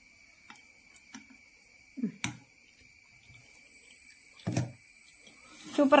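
Quiet room tone with a faint steady high-pitched whine, a few soft clicks and one sharp click a little after two seconds in, and brief low murmurs; a voice starts talking near the end.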